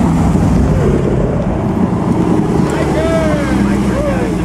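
Car engine running at low speed, a steady low drone, as a car drives slowly past. A voice is heard briefly near the end.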